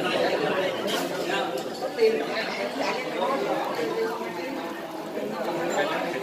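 Background chatter of many people talking at once at surrounding tables, with no single voice standing out and a few brief clicks.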